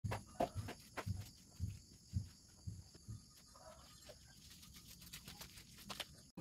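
Footsteps on dry leaves and bare ground, soft thuds with a crackle, about two a second for the first three seconds, then fading as the walker moves away. A faint steady high-pitched hum runs underneath.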